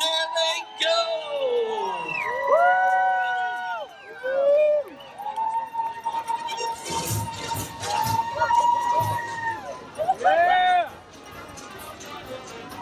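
A crowd of runners and spectators cheering and whooping as a mass marathon start gets under way, with many overlapping shouts rising and falling and one long held whoop in the middle.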